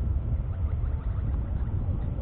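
Wind buffeting an outdoor camera microphone: a continuous, uneven low rumble.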